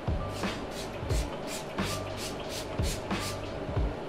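Ben Nye Final Seal setting spray pump-sprayed onto the face in a quick series of short hissing spritzes, about three a second, over background music.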